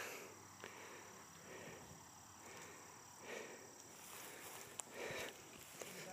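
Faint outdoor evening ambience: a steady high insect trill, typical of crickets, with a few soft rustles and a small click about five seconds in.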